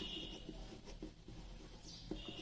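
Pen writing on paper: faint scratching strokes as words are handwritten.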